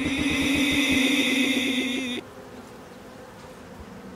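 A man's voice saying "bee", many copies piled on top of one another so thickly that they merge into one continuous buzzing drone. It cuts off suddenly about two seconds in and leaves a much quieter steady background.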